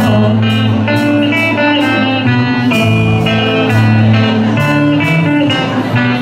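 Live band music: electric guitar carrying the tune over bass guitar and a drum kit keeping a steady beat, in an instrumental passage without singing.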